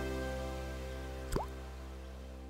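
A water drop plopping into still water, a short rising 'bloop' about a second and a half in, over a sustained music chord that is slowly fading out.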